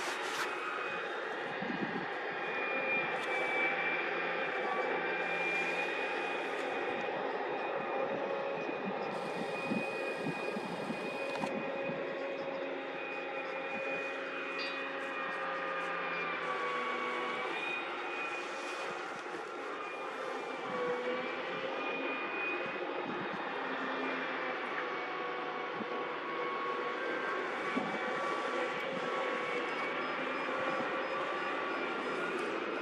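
Engines and pumps of heavy construction machinery on a concrete-pouring barge running steadily: a continuous drone with several held tones that waver slightly in pitch.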